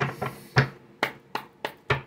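A deck of tarot cards being shuffled by hand, giving a quick run of about seven sharp card snaps and taps.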